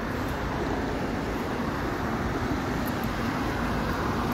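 Steady rush of road traffic from passing vehicles.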